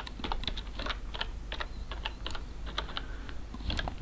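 Typing on a computer keyboard: an uneven run of key clicks, a few a second, as a short note is typed in.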